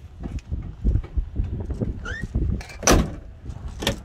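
Handling knocks and a sharp latch click as the old Volvo 244's rear door handle is pulled, with a short squeak about two seconds in. The door does not open: its latch is broken.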